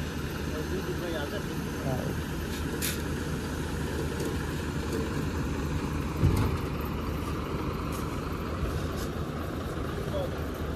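Diesel engine of a Tata tipper truck running steadily as the emptied truck pulls away from its tipped load, a low rumble with a brief louder low thump about six seconds in.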